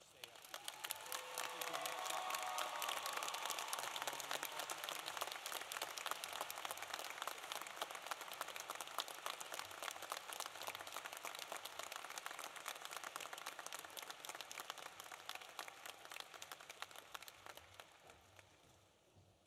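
Large audience applauding, building over the first two seconds and slowly thinning toward the end, with a few faint voices in the first few seconds.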